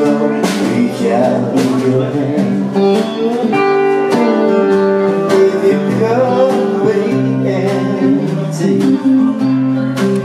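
Live guitar music from a two-guitar duo: an electric guitar picked alongside a second guitar, played continuously.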